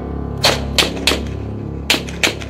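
Four rifle shots fired out to sea, unevenly spaced: three in quick succession near the start, then one more near the end. Each is a sharp crack with a short echo, over a steady low hum.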